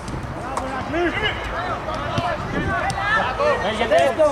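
Several footballers shouting and calling to one another during play, their voices overlapping, with a few short knocks among them.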